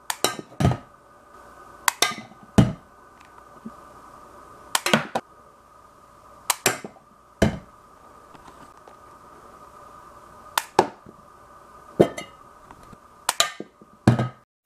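Homemade coil gun, driven by a disposable camera's flash circuit, firing repeatedly: sharp snaps and knocks, often in close pairs, as projectiles are shot at a tin can. A faint steady high whine from the flash circuit charging its capacitor runs underneath.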